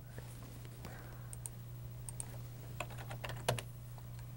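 A few faint, scattered computer keyboard key clicks over a steady low electrical hum.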